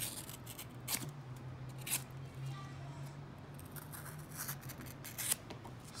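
Folding knife blade cutting through thick leather in short, sharp strokes. There is about one a second at first, then a few quicker ones near the end.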